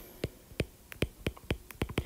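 Stylus tapping and clicking on a tablet while words are handwritten: a string of quiet, sharp, irregular clicks, about three or four a second.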